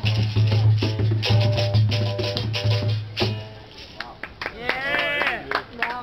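Capoeira berimbau played with its caxixi rattle over a deep hand drum (atabaque), a rhythmic toque that stops about three seconds in. After a short lull, a person's voice is heard briefly.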